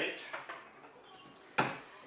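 A single sharp knock about a second and a half in, a container set down or bumped on a wooden table; the room is otherwise quiet.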